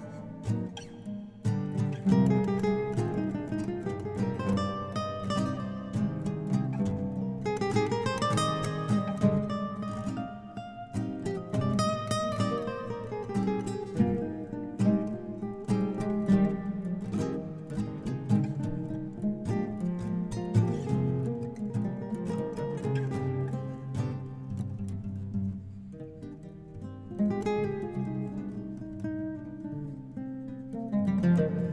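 Oud and guitar playing instrumental music together: a plucked melody with quick runs that climb and fall, over lower plucked notes.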